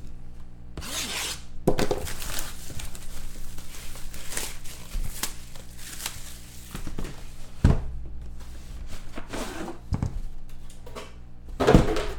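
Trading-card packaging being opened and handled by hand: a short scraping rip about a second in, light rustling and rubbing, and a few sharp knocks as the pieces are set down.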